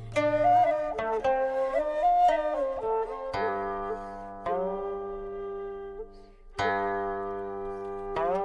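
Background instrumental music: a flute-like melody over plucked string notes that ring out and fade, with a low sustained bass note underneath.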